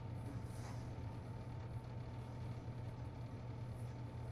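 Quiet, steady low hum of room tone, with a few faint rustles as cardboard boxes and a cloth tote bag are handled.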